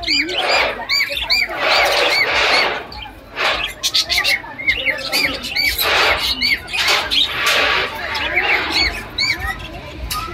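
Flock of budgerigars chirping and chattering: many quick rising-and-falling chirps overlapping, mixed with harsher squawks.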